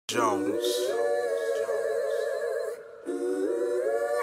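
A wordless vocal line, hummed in long held notes that waver in pitch. It breaks off briefly just before three seconds in, then comes back.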